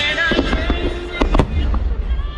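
Aerial firework shells bursting overhead: several sharp bangs, the loudest two close together about a second and a half in.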